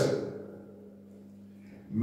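A pause in a man's speech: his last words fade out with room echo, then only a faint, steady low hum and room tone remain until he speaks again at the end.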